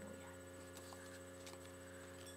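Near silence apart from a low, steady electrical hum in the recording, with a few faint ticks.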